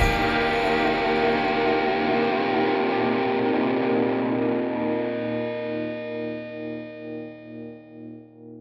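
Instrumental music: a sustained electric guitar chord with effects rings out and slowly fades away, taking on a slow wavering pulse as it dies in the last few seconds.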